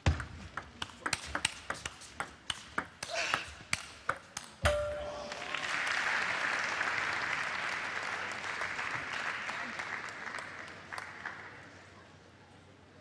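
Table tennis rally: a quick, irregular run of sharp clicks from the ball striking bats and table, ending about four and a half seconds in with a louder hit, then arena crowd applause that fades toward the end.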